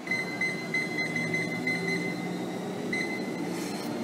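Life Fitness treadmill console beeping in quick succession, one short high beep per press, as the speed button is tapped about ten times to raise the belt speed from 7.4 to 8.2 mph; a couple more beeps come near the end.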